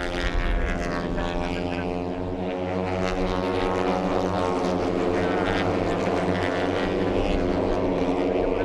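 Pack of Moto3 racing motorcycles, their 250 cc single-cylinder four-stroke engines held at high revs as they pass, blending into one steady, loud drone.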